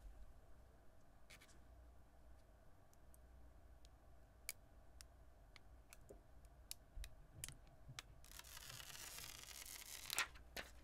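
Near silence, with a few faint ticks and, near the end, a faint rustle of the thin plastic backing sheet being peeled off a film screen protector.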